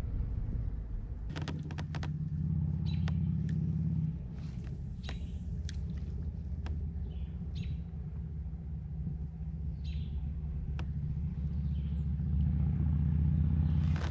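A steady low rumble with scattered small clicks and knocks, and a few short high bird chirps.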